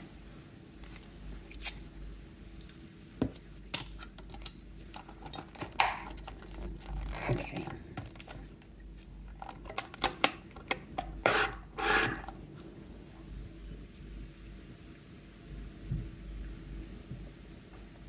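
Handling noises of a plastic cup, its snap-on lid and a paper straw being pushed through the lid: scattered light clicks and scrapes, with longer rustling scrapes about seven and eleven seconds in.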